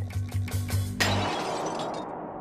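Background music with a low beat, then about a second in a sudden loud crash as a load of dropped objects hits the ground: white ceramic shattering and watermelons bursting, the noise dying away over the next second.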